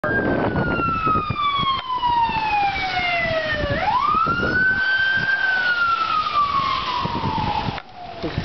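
Police car siren on its wail. The pitch falls slowly, sweeps back up about halfway through, then falls slowly again, over a steady background rush. It is warning the town of a tornado because the outdoor sirens are down.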